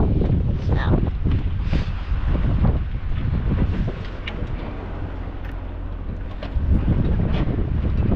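Wind buffeting the microphone on a boat's open deck: a heavy low rumble that eases off for a couple of seconds in the middle, with a few faint clicks.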